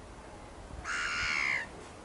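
A single harsh bird call, loud against the quiet marsh background, starting about a second in and lasting under a second.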